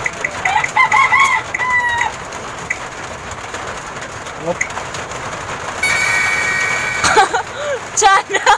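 A phone spin-the-wheel app ticking rapidly, ending about half a second in, then a rooster crowing for about a second and a half. A long, steady pitched call follows near the end.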